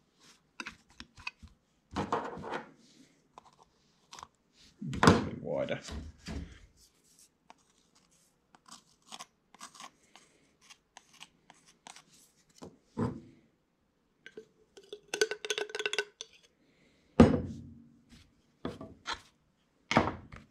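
Plastic measuring spoons scooping powdered dye and tapping against a plastic tub, with a wooden stick scraping a heaped spoon level. It is a run of small clicks, scrapes and knocks, with a few louder knocks.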